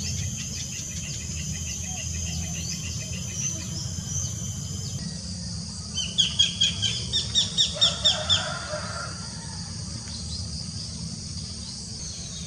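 Wild birds calling: rapid, repeated high chirping at first, then a run of about ten loud, sharp down-slurred notes a little past halfway, over a steady low background noise.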